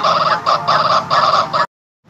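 A cartoon character's speech run through a heavily pitch-shifted 'Preview 2' voice effect, which makes it sound high and distorted in short broken phrases. It cuts off suddenly near the end.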